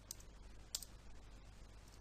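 A few faint computer keyboard keystrokes, the clearest about three-quarters of a second in, over a low steady hum.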